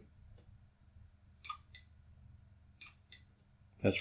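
Two pairs of short, sharp clicks about a second and a half apart, each pair a press and release of a pushbutton. The button is on the PLC's external input, and each press decrements the counter by one.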